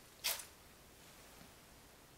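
Water squeezed by hand from soaked dried black mushrooms, with one brief wet splash into the bowl about a quarter second in, then only faint room noise.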